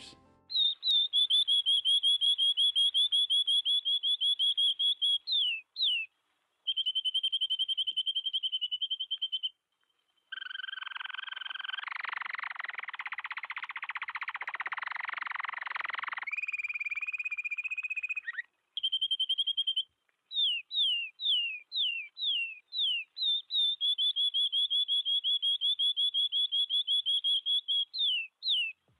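Recorded canary song played through a stereo auto-panning plugin. It runs in long, fast trills of repeated high notes, with runs of quick downward-swooping notes and a harsher, buzzy passage in the middle, broken by brief pauses between phrases.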